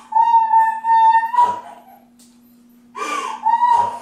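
High-pitched, drawn-out whining cries, twice: one held for about a second at the start, the second starting with a slight falling slide about three seconds in, with a short sobbing breath between.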